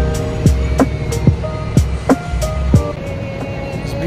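Background music with drum hits and deep, falling bass notes under held tones, thinning out near the end.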